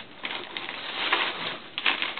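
Paper rustling and crinkling as hands shift paper-wrapped packages and shredded kraft paper filler in a cardboard box, with a louder crinkle about a second in and another near the end.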